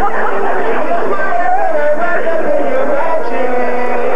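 Jazz song with a voice singing a wordy, gliding melody line over accompaniment, steady and continuous.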